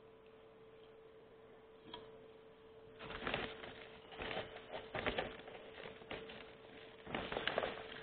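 Close rustling and scraping as the plant and potting soil are handled, in several bursts over the last five seconds, over a steady electrical hum.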